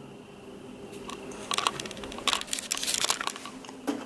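Handling noise: after a quiet first second, rustling with a run of small irregular clicks, from hands moving around the monitor and camera.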